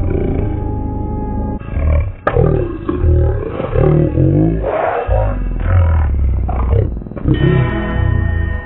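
A cartoon soundtrack played at quarter speed: a character's voice and the background music pitched far down and drawn out into slow, deep, wavering sounds, with a sharp click about two seconds in.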